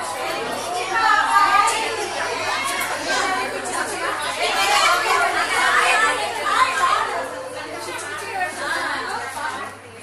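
Many women chattering over one another, dying down a little near the end.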